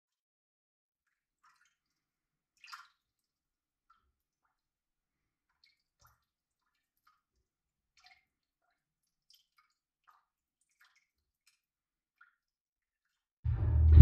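Sparse, faint water drips, scattered a second or so apart. Near the end comes a sudden loud, low rumbling boom.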